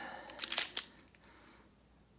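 Ruger Max-9 pistol's slide being racked back and locked open: a quick run of sharp metallic clicks about half a second in.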